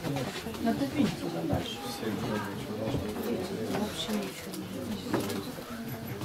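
Several people talking at once: indistinct, overlapping chatter of a small gathering.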